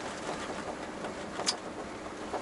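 Steady engine and road noise inside the cab of a Tata Daewoo Prima 5-ton cargo truck on the move. A single sharp click sounds about one and a half seconds in.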